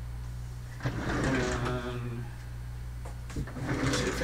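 Wooden cabinet drawers of sample vials being slid open and the vials handled: a knock about a second in and a few short clicks and knocks near the end, over a steady low hum. A brief murmur of voice comes just after the first knock.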